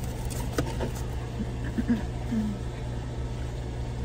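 Car engine idling, a steady low hum heard from inside the cabin, with a sharp click about half a second in and a faint voice in the background.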